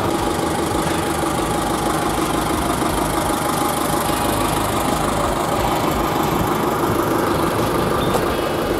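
YuMZ tractor's diesel engine running steadily, at an even level with no revving.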